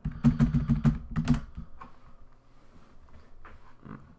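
Computer keyboard typing: a quick run of keystrokes for about a second and a half, then a few scattered single clicks.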